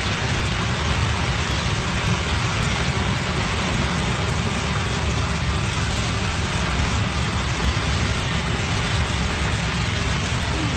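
A drilling well blowing out: a tall jet of muddy water shooting up past the drill rig, heard as a loud, steady rushing noise, with the spray falling back like a heavy downpour.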